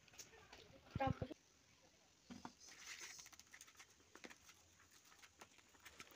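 A brief vocal sound with a low thump about a second in, then faint clicking and scraping of a plastic fork stirring noodles in a foil bowl.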